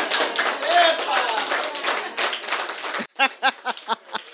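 Audience applauding, a dense round of clapping that cuts off about three seconds in. A woman then laughs in short rhythmic bursts.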